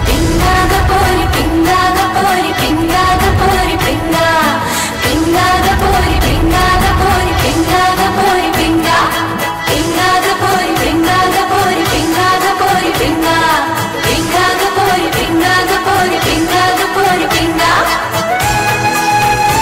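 Bollywood film song playing: women's voices singing a melody over a fast, dense percussion beat.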